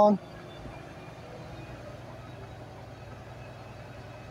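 Truck's diesel engine running steadily at low speed during slow manoeuvring, a low even hum heard from inside the cab.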